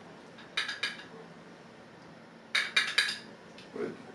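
Quick metallic clicks from the controls of a LOMO Sputnik stereo camera being worked by hand: a burst of three about half a second in, then four or five more about two and a half seconds in, tapping out an uneven rhythm like Morse code.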